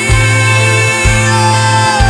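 Live worship band music: a woman singing a long held note over a low bass and a beat about once a second.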